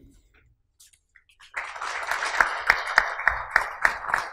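Audience applauding, beginning about a second and a half in after a brief hush, with a dense patter of many hands and a few sharper individual claps standing out.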